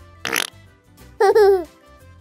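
Cheerful children's background music. A short, loud noisy swish comes about a quarter second in. About a second in, it is followed by a loud, high, wavering giggle-like cartoon sound effect that falls in pitch at its end.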